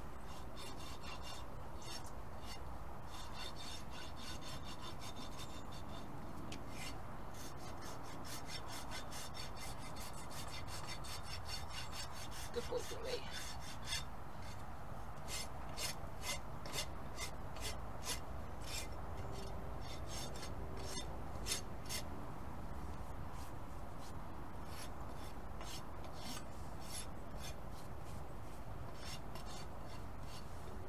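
Hoof rasp filing the edge of a horse's hoof wall in repeated scraping strokes, tidying off the ragged, crumbly bits. The strokes come quick and close together for the first half, then slower and spaced out, about one or two a second.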